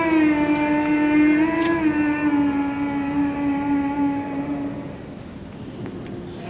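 A long, steady droning note with many overtones. It steps down in pitch twice and fades out about five seconds in.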